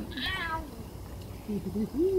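A small child's brief high-pitched whimper, falling in pitch, about a quarter second in; a sleepy toddler fussing at being held in the water. A lower voice sounds briefly near the end.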